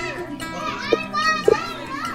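Young children's voices chattering and calling out over background music, with two short loud cries about one second and one and a half seconds in.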